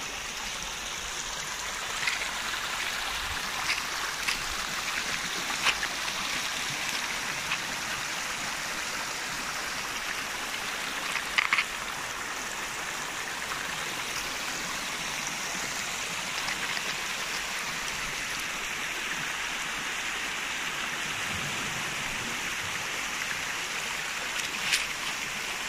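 Shallow water running steadily over a shingle beach's pebbles, with a few short sharp clicks and splashes, the loudest pair about halfway through.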